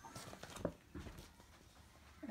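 Faint rustling and a few light taps of sheet-music pages being handled on an upright piano's music stand.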